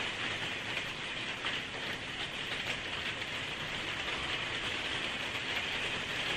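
Steady, even hiss of background noise, with a few faint ticks.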